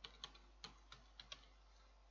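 Computer keyboard being typed on: a short, faint run of about seven key clicks in the first second and a half.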